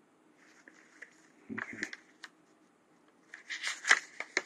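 Paper pages being turned and handled: two short bouts of rustling with small clicks, one about a second and a half in and another near the end.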